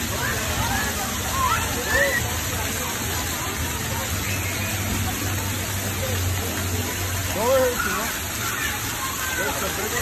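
Steady hiss and splash of splash-pad fountain jets and sprays, with children's high shouts and calls scattered over it.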